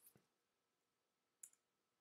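Near silence broken by two faint clicks from working a computer, one right at the start and one about a second and a half in.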